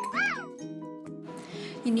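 A cat meowing once near the start: a single call that rises and then falls in pitch, over background music.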